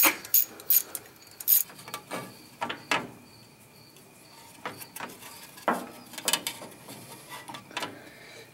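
Socket ratchet clicking in a few sharp strokes during the first second and a half as valve-cover bolts are worked on an engine, followed by sparser, fainter clicks and scrapes.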